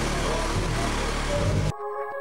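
Loud, muffled din of a crowded backstage corridor picked up by a handheld camera: indistinct voices over a low rumble. Near the end it cuts off suddenly into clean electronic music with held synth notes.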